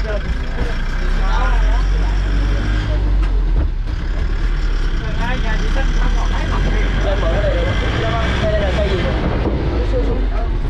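Military truck running with a steady low rumble, heard from inside its enclosed rear cargo bed, with men's voices talking over it at times.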